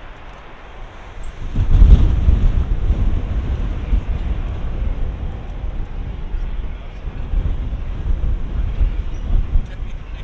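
Four-engine military jet landing: a low jet rumble swells about a second and a half in, is loudest just after, then carries on steadily as the aircraft rolls out after touchdown.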